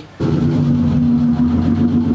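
Car engine held at steady high revs, one unbroken drone that comes in a moment after the start and cuts off at the end.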